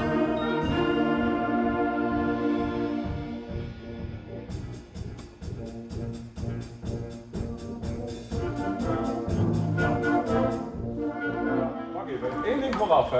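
A large youth wind band of woodwinds and brass, about a hundred players, plays a piece in rehearsal. Held full chords open it, and about four seconds in a quick, even beat of sharp strokes comes in under the band and stops shortly before the end.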